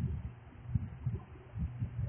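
Chalkboard duster rubbed back and forth across a blackboard, giving a run of dull, uneven low thuds, several a second, over a steady low hum.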